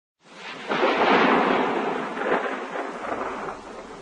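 Thunder, likely a sound effect: a rumble that swells sharply a little under a second in, then rolls on and slowly fades.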